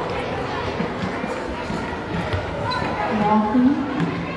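Many children chattering at once in a large gym, with scattered thuds on the wooden floor. About three seconds in, one voice rises above the rest and is the loudest sound.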